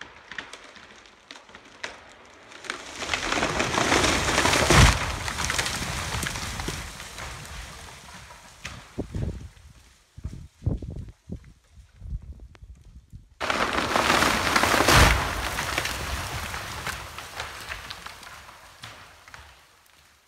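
A big white fir crashing down through the surrounding trees: a rush of breaking branches builds to a heavy thud about five seconds in, then fades as debris settles, with a few scattered knocks of falling limbs. A second crash starts abruptly about thirteen seconds in and lands with another thud about two seconds later.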